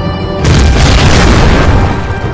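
Explosion sound effect: a sudden loud boom about half a second in, followed by a rumbling blast that lasts over a second, laid over dramatic trailer music.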